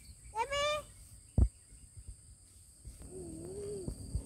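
Steady high insect chirring, with a short rising call about half a second in and a sharp loud thump about a second and a half in; a faint low wavering hum follows near the end.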